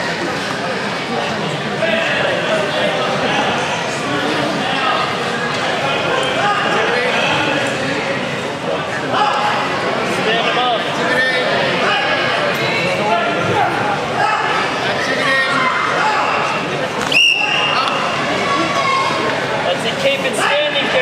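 Spectators talking and calling out in a large sports hall, many voices overlapping, with a sharp knock near the end.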